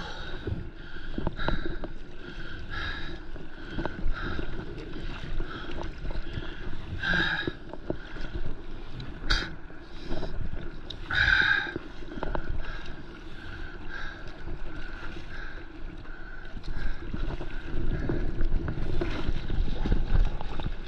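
Stand-up paddleboard being paddled through seawater: the carbon paddle's strokes swish and splash about every second and a half over water lapping against the board, growing louder near the end as water splashes off the nose.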